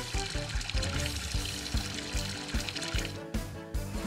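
Cartoon sound effect of wet cement pouring from a mixer truck's chute, a steady rushing pour, over background music with a steady beat.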